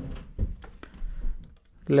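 A few light, scattered taps and clicks of a stylus on a tablet during handwriting.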